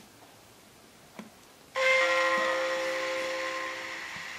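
A chime of several ringing tones at once, like a station-announcement gong, from the sound decoder of a Märklin ICE 2 HO model train. It sounds once, suddenly, about two seconds in, and slowly fades.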